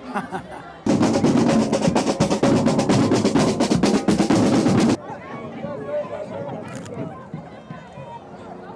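Marching band drumline with snare drums playing a fast, dense run of strokes. It starts abruptly about a second in and cuts off about four seconds later, leaving quieter crowd voices.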